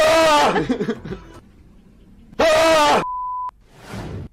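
Two loud, drawn-out yells with a wavering pitch, about two seconds apart, followed by a steady half-second beep tone that cuts off sharply.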